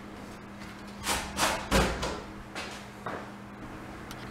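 Hands working on a wooden interior door: a few short scuffing strokes about a second in, a soft thump near the middle, then a couple of lighter scuffs.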